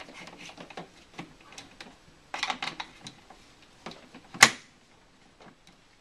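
Plastic clicking and rattling as a clear filter attachment is handled and fitted onto an upright vacuum cleaner's hose wand, with a denser run of clicks about halfway through and one sharp, loud click about four and a half seconds in.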